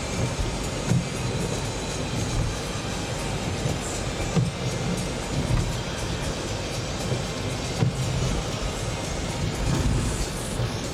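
Cabin noise of a car driving on a wet road: a steady rush of tyre and road noise over a low, uneven rumble.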